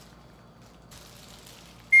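A quiet pause of faint room hiss, then near the end a loud high whistle tone suddenly starts and begins sliding down in pitch: an edited-in comedy sound effect.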